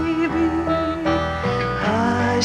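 Lullaby music from a cassette recording: a slow tune of long held notes.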